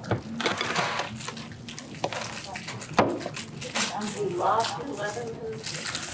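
Indistinct low conversation with scattered small clicks and knocks, a sharp click about three seconds in being the loudest.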